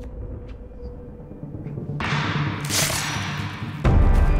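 Dramatic film score with low drums. A rush of noise starts about halfway and swells to a loud burst, and a heavy boom hits just before the end.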